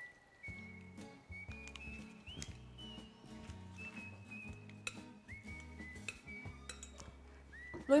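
Soft background music: a high, whistle-like melody of long held notes stepping up and down over low sustained notes. Faint clicks and clinks of cooked lentils being tipped from a glass bowl and stirred with plastic utensils sound under it.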